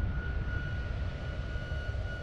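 A steady low rumble with a thin high tone held above it, an unbroken background drone.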